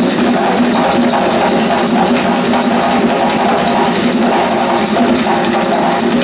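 Live ensemble of barrel drums played by hand, a dense steady rhythm, with voices singing over it.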